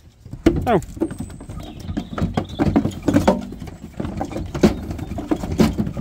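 Sheep hooves clattering on a livestock trailer's floor and slatted ramp as a group of ewes comes off the trailer: a string of irregular knocks.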